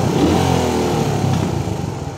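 Suzuki Raider 150's single-cylinder four-stroke engine running, its pitch rising over the first second or so as it is revved, then easing off slightly near the end.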